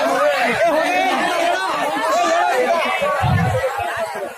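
Speech only: a man talking fast into a stage microphone, with other voices chattering over him.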